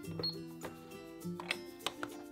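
"Just Like Home" toy cash register being rung up: its plastic keys and parts clicking several times, the sharpest clicks in the second half, with a short high beep just after the start.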